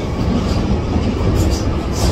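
Underground train running, heard from inside the carriage: a loud, steady rumble.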